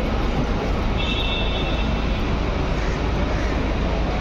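Steady outdoor traffic noise with a low rumble, and a brief faint high tone about a second in.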